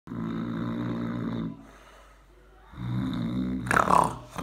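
A man snoring: two long, low snores with a quiet pause between them, then a sudden loud burst of breath near the end as he startles awake.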